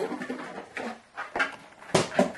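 Lid of a black cardboard gift box being pulled off and handled: rustling and scraping of cardboard with a few clicks, and a sharp knock near the end.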